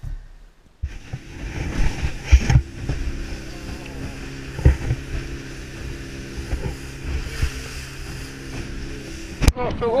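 Boat engine running steadily while the boat is under way at sea, with a few sharp thumps as the hull meets the swell.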